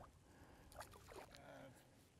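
Near silence, with a few faint ticks about a second in.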